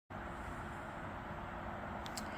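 Steady background noise with a faint low hum: room tone.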